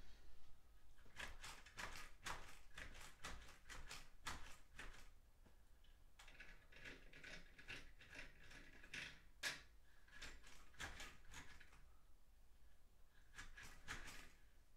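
Faint light clicks and rattles of a window shade being worked to close it against the sun's glare. There is a quick run of them, then scattered ones, with a sharper click near the middle.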